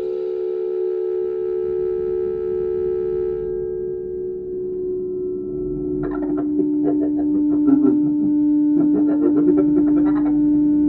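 Held electronic tones from an ondes Martenot-style Onde: a few steady notes sounding together, the lowest stepping down in pitch about four seconds in. From about six seconds, randomly chopped, stuttering fragments of modular synth audio cut in over the held note.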